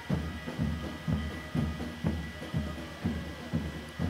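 Live band music at the roadside, a steady drum beat of about two beats a second.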